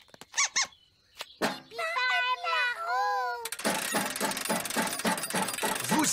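Cartoon sound effects: a run of high, wavering squeaks, then, from a little past the middle, a fast continuous rattling clatter as the giant metal hamster wheel spins with the hamster running inside it.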